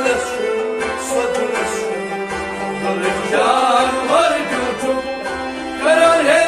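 Kashmiri Sufi folk ensemble playing: a harmonium holds sustained notes with a rabab and a sarangi, over a steady hand-drum beat. About halfway through a male voice enters, singing a line with a wavering, ornamented pitch.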